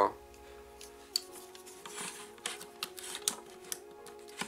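Hard plastic toy parts of a Hasbro Dino Megazord clicking and knocking as pieces are handled and unclipped, a few sharp clicks spread through, the loudest about a second in. Soft background music with steady held notes underneath.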